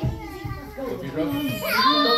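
Young children's voices calling out and chattering while they play, high-pitched and rising and falling.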